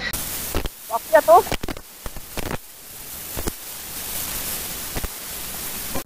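Wind rushing over the microphone of a camera on a moving bicycle, a steady hiss-like rush with a few sharp knocks from the bike jolting over the road. A brief vocal sound breaks in about a second in.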